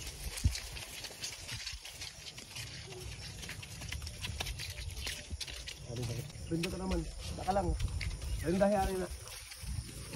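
Horse walking through tall grass and brush: irregular rustling and soft hoof steps over a low rumble.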